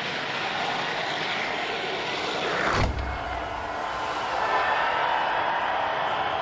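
Ski jumper's skis running in the icy inrun tracks with a steady rushing hiss, then a short thump near three seconds in as he leaves the take-off table, followed by a steady rush of air noise as he flies.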